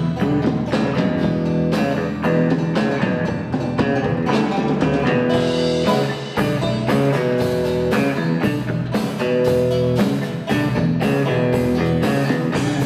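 Live country-rock band playing an instrumental passage: electric guitar and banjo over electric bass and drum kit, with a steady beat.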